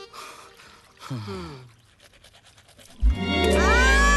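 Film soundtrack: a quiet, sparse stretch, then about three seconds in a sudden loud dramatic music sting with a deep bass note and a long held cry from a woman over it.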